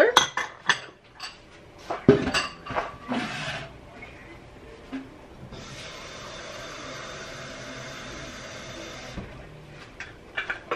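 Kitchen utensils and dishware clinking and knocking over the first few seconds, as a cook handles pans, spoons and containers. This is followed by a steady hiss lasting about four seconds that cuts off suddenly.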